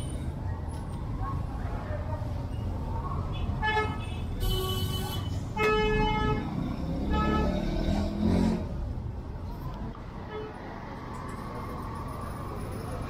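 Street traffic rumble with three short car-horn toots in the middle.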